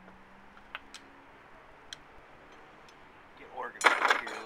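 A few faint clicks, then near the end a short, loud burst of a man's voice.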